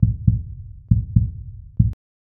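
Logo sting of deep bass thumps coming in pairs like a heartbeat, about one pair a second, cutting off suddenly just before the end.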